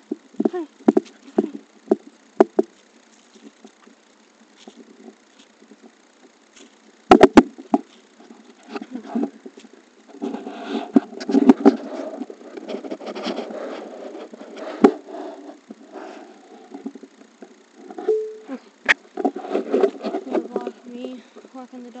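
Phone microphone handling noise as the phone swings in a walker's hand: scattered taps and clicks, a quick cluster of loud knocks about seven seconds in, then long stretches of rubbing and scraping against the microphone.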